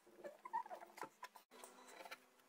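Knife blade cutting into the rind of a small pumpkin, with faint scratching and crackling as it goes through and a short squeak of the blade about half a second in.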